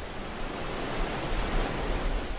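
Steady rushing outdoor noise with an uneven low rumble, as of wind buffeting the microphone.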